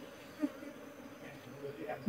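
Faint, steady buzzing of a honeybee colony from an opened hive, with a short faint sound about half a second in.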